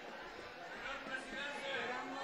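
Faint, indistinct chatter of several people's voices, with no words made out.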